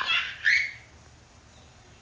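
A child's high-pitched squeals of laughter, two short cries in the first half second, then only a faint steady hiss.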